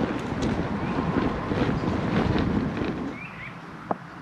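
Bicycle tyres rolling over a leaf-covered dirt forest track, a rough crackling rush mixed with wind on the microphone. About three seconds in it gives way to a much quieter hush, with a couple of faint chirps and one sharp click near the end.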